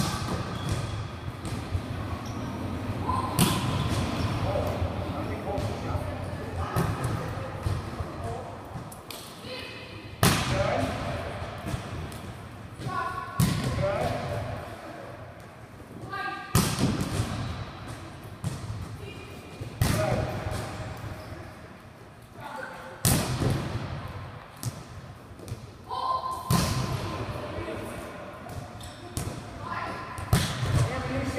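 Volleyballs being spiked again and again, about every three seconds: sharp smacks of hand on ball and thuds of the ball off blocking pads and the floor, echoing in a large gym.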